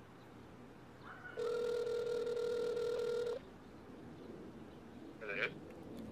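A single ringback tone from the Samsung Gear 2 smartwatch's small speaker: one steady two-second ring starting about a second in. It means an outgoing call is ringing at the other end and has not yet been answered.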